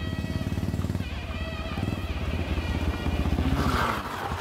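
Motorcycle engine running at low speed, a rapid, even beat of firing pulses. Its deep rumble drops out at the end.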